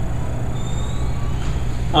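A pause in a lecture filled with a steady low rumble of room noise. A man's voice starts again at the very end.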